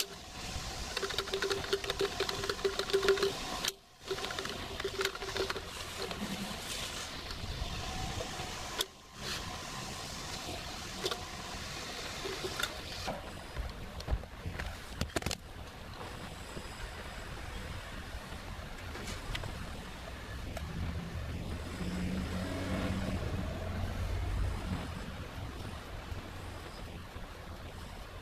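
Outdoor background noise with a steady hum in the first few seconds, two short dropouts, and a low rumble that swells and fades near the end.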